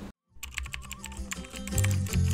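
Keyboard-typing sound effect, a quick run of key clicks, over background music that comes in after a brief cut to silence; the music's bass notes enter near the end.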